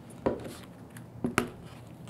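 Shoes knocking against a wooden tabletop as they are put down and picked up: one knock about a quarter second in, then two sharper knocks close together a little past one second.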